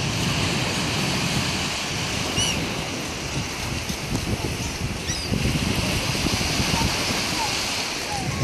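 Small waves breaking and washing up on a sandy shore, with wind buffeting the microphone. A few short, high gull calls cut through, the clearest about two and a half seconds in.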